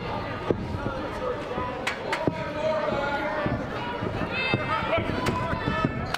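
Thuds on a wrestling ring's canvas, two sharp ones close together about two seconds in and a few lighter ones, over a hall full of crowd voices and shouts.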